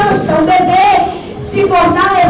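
A woman singing a gospel song solo into a microphone, with long held notes and a vibrato on one note a little before the middle.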